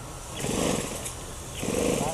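Small engine of a radio-controlled model airplane running as the plane flies a low pass, its sound swelling twice.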